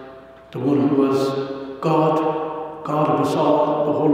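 A man's voice chanting slowly in long held notes, in three phrases of about a second each.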